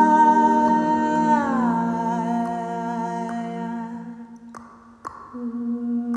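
Layered a cappella humming, several voices looped and held on long notes, one of them sliding down in pitch about a second and a half in. The voices fade almost away about four and a half seconds in, then new held notes enter just before the end.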